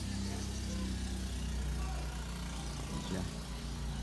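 Steady low engine hum, like a motor idling, running throughout.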